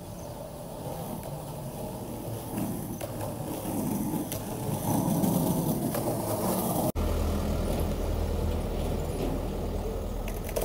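Skateboard wheels rolling on an asphalt path, the rumble growing louder as the rider comes close and passes. About seven seconds in it cuts abruptly to a steadier, deeper rumble.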